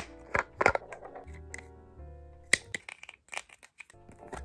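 Soft background music with sustained tones, over a run of sharp clicks and knocks from plastic skincare containers, a bottle and then a cream jar, being handled. The loudest knocks come about two-thirds of a second in and again about two and a half seconds in.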